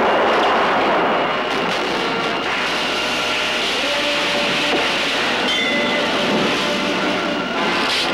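Film soundtrack of music and effects: a loud, steady rushing noise, with held notes rising out of it from a few seconds in.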